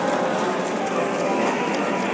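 Music from a coin-operated mechanical dancing-puppet machine, with steady rhythmic clacking from the running machine.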